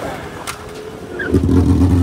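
Motorcycle engine revved hard while riding. It comes in suddenly and loudly about a second and a half in and holds a high steady note, over road and wind noise.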